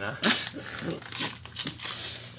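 Paper and plastic mail packaging crinkling and tearing as it is handled, with brief laughter over it.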